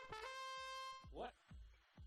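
A short electronic tune, trumpet-like in tone: a run of quick rising notes ending on one held note that cuts off sharply about a second in.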